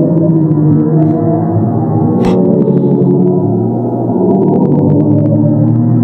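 NASA's sonification of a black hole: a dense drone of many overlapping low, sustained tones that shift slowly and never break.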